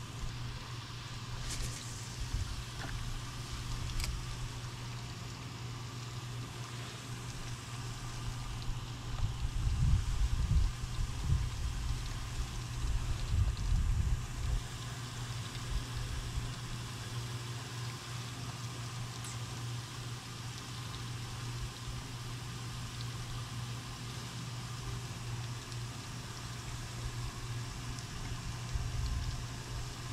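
Wind buffeting the microphone in irregular gusts, strongest about ten to fifteen seconds in, over a steady low hum, with a couple of faint clicks.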